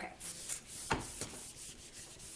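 Whiteboard eraser wiping marker off a whiteboard: a rubbing hiss in repeated strokes, with a single knock about a second in.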